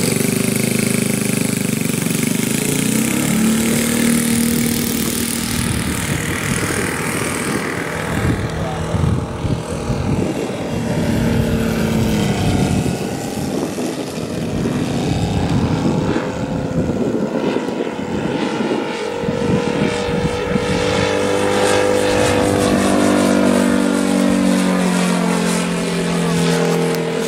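Valach 60 engine of a Hangar 9 Fokker D7 radio-controlled model biplane running through its takeoff and then in flight, its pitch rising and falling as the throttle changes and the plane passes overhead.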